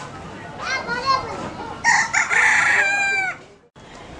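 A rooster crowing once: a long, loud call that falls in pitch at its end, then cuts off abruptly.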